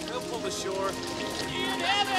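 Rushing river rapids under orchestral score with long held notes, with voices shouting near the end.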